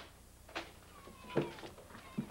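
Several sharp knocks and clicks, with a short thin squeak that falls in pitch about a second in.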